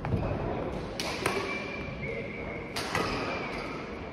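Badminton rackets striking a shuttlecock: three sharp cracks, two close together about a second in and another near three seconds, with a brief high squeak of court shoes on the floor between them, all ringing in a large sports hall.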